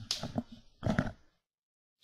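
A handful of short knocks and clicks in the first second or so, then the sound cuts off to dead silence.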